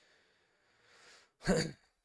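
A man's breath drawn in softly, then about one and a half seconds in a single short voiced exhale, a sigh, close to a headset microphone.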